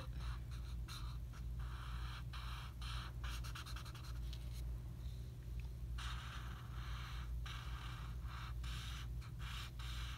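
Felt-tip marker rubbing back and forth on paper in quick repeated scratchy strokes as an area is coloured in, the strokes thinning out for a moment midway and then picking up again.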